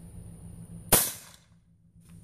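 A single sharp crack about a second in, dying away over about half a second, over a steady low hum and a thin high whine.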